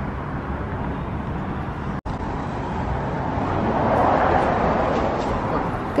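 Steady outdoor traffic noise that swells and fades again around four seconds in, broken by a brief dropout about two seconds in where the recording cuts.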